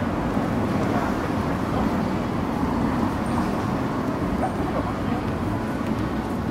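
City street ambience: a steady low rumble of road traffic, with faint voices of passers-by.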